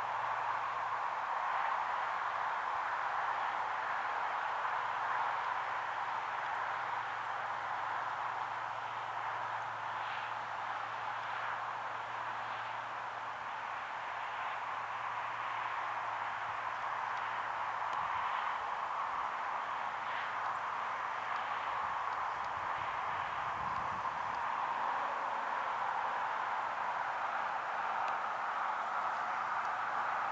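A steady, even hiss of outdoor background noise with no distinct events.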